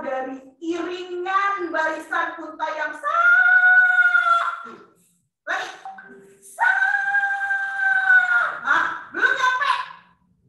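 A woman's voice in short sung or chanted phrases, with two long, high held notes, the first about three seconds in and the second after a short pause near the middle.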